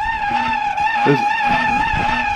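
Wall-mounted louvered fan unit running with a steady high whine that wavers slightly in pitch, with fainter overtones above it. It has come on by itself with its switch off.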